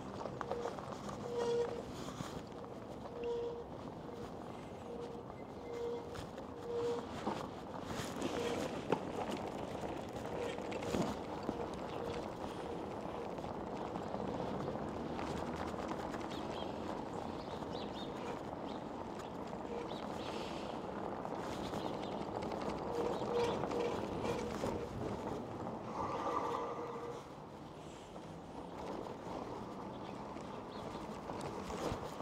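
E-bike rolling over rough pavement and then cobblestones: a continuous rattle of tyres and bike over the stones, with many small knocks.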